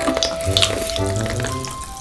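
Hard sugar shell of candied strawberry tanghulu being bitten and chewed, a rapid glassy crackling and crunching, over background music.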